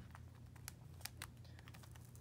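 Faint, scattered light clicks and ticks of fingers handling a plastic binder page of trading-card sleeves, about five or six over two seconds, over a low steady hum.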